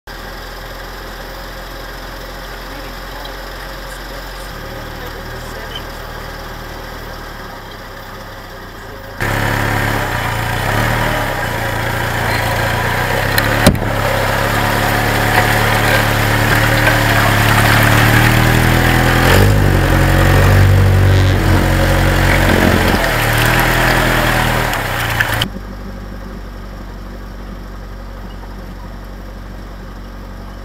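Willys flat-fender jeep engine running steadily as it drives a dirt trail. About nine seconds in it turns much louder: the engine pulls with its pitch rising and falling while water splashes as a tyre ploughs through a muddy stream, with one sharp knock a few seconds later. About twenty-five seconds in it drops back to the quieter steady running.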